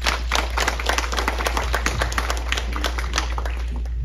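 Audience clapping, many hands at once, thinning out near the end, over a steady low electrical hum.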